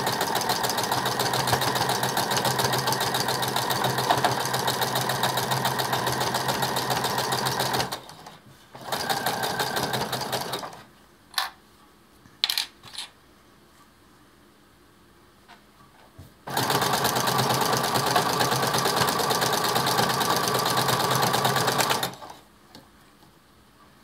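Brother electric sewing machine fitted with a walking foot, stitching a hem through thick handwoven towel cloth with a fast, even stitching rhythm. It runs in three spells: a long run of about eight seconds, a short burst, then after a pause with a few light clicks, another run of about five seconds.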